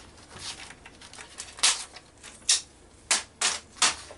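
Sheets of paper being handled and slid into place, heard as a handful of short, sharp rustles and scrapes.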